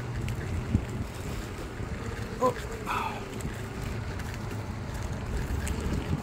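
Electric skateboard riding over a dirt trail: a steady low rumble of its pneumatic off-road wheels on the rough ground, with wind buffeting the microphone.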